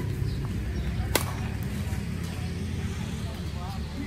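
A badminton racket striking a shuttlecock with one sharp crack about a second in, over a steady low background rumble.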